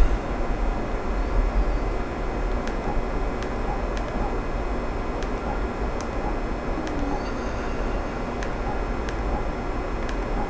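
Steady low background rumble with faint, sharp clicks about once a second: remote control buttons being pressed to scroll through the projector's on-screen menu.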